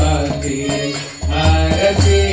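Devotional kirtan: a voice singing a mantra over a drum and jingling hand cymbals, with a steady beat.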